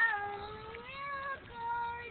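A toddler's high-pitched, drawn-out vocalising without words: one long held note of about a second and a half, then a second steady note.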